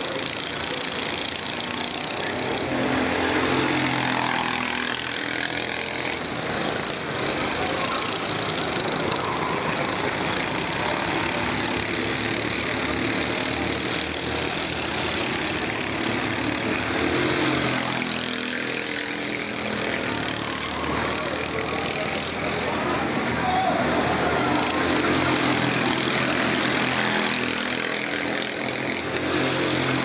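Racing go-kart engines on the circuit, their pitch rising and falling over and over as the karts brake into corners and accelerate out of them.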